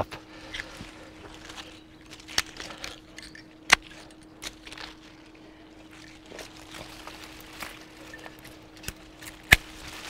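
Hand pruning shears cutting grapevine wood: a few sharp snips, the loudest about a third of the way in and another near the end, amid rustling of leaves and cut branches being pulled away.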